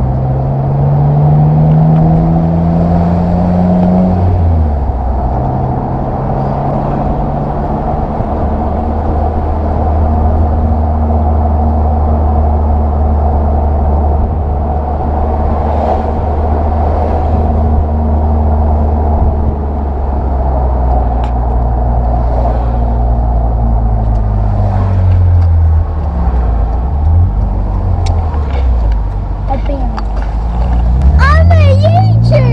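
BMW M Roadster's straight-six engine under way with the roof down. It rises in pitch as it pulls for the first four seconds, drops with a gearchange, holds a steady cruise, eases off about twenty seconds in and picks up again near the end, with wind and road noise around it.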